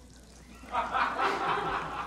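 Laughter that breaks out just under a second in and carries on, following a joke.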